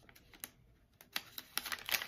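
Plastic snack bag being handled and opened: a run of irregular crinkles and clicks, sparse at first and then denser and louder in the second half.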